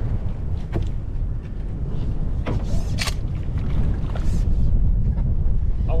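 Wind buffeting the microphone in a steady low rumble, with a few brief knocks.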